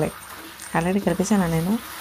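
A woman speaking, after a short pause at the start.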